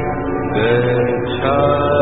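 Buddhist chanting: a voice holding long melodic notes, sliding into a new note about half a second in and again about a second and a half in.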